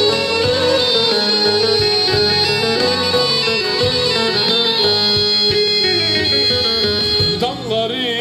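Black Sea kemençe (Karadeniz kemençesi, a three-string bowed fiddle held upright) playing a fast, busy folk melody over a steady drone note, with a regular low beat underneath. The tune eases off briefly near the end.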